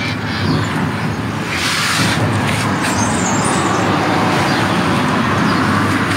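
Steady outdoor background noise, a low rumble with a hiss over it, swelling briefly about two seconds in.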